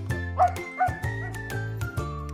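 A dog yips twice, about half a second and just under a second in, over background music with a steady beat.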